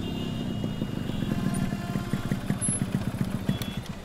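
Motorcycle engine running at low speed, a rapid low chugging that grows louder over the first three and a half seconds, then eases off.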